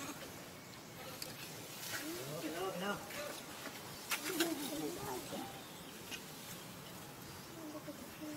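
Two short bouts of wavering, pitch-bending vocal sounds, about two and four seconds in, with a few sharp clicks among them, over faint outdoor background noise.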